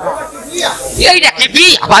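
Only speech: an actor's stage dialogue spoken into a microphone.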